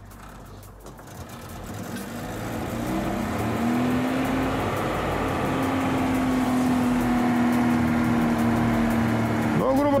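A car engine running in first gear drives a studded winter tire through a reversed rear axle, spinning the wheel up to about 650 rpm. A mechanical drone with a steady whine builds over the first few seconds, then holds steady.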